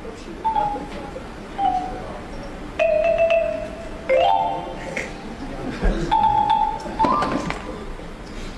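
Short xylophone-like musical sound-effect notes, about six of them, each held under a second at a different pitch, with the last one rising near the end, over a steady background hum.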